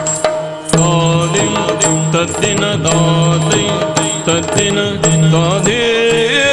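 Yakshagana background music: a sung melody with wavering ornaments, carried over a steady drone and marked by regular drum strokes and small cymbal strikes. The voice climbs near the end.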